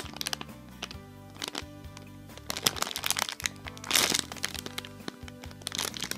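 Clear plastic bag crinkling in short irregular rustles as hands squeeze and turn a bagged foam squishy, over background music with steady held notes. The loudest rustle comes about four seconds in.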